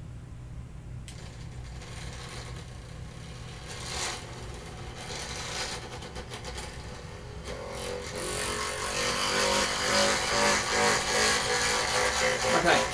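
Small electric motor spinning an aluminium flywheel on a freely rotating wooden platform: a steady low hum with a mechanical whir and rattle, plus a couple of clicks early on. From about eight seconds in the whir grows louder and busier.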